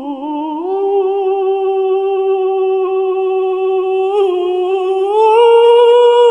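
A man singing unaccompanied in a high alto register, holding long steady notes. The pitch rises to a held note about half a second in, then steps up to a higher note around five seconds in.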